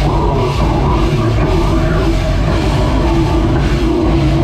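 Heavy metal band playing live at full volume: distorted guitars and bass over a drum kit, in one dense, unbroken wall of sound.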